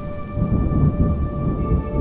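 Rumbling thunder with rain from a thunderstorm, under soft sustained background music.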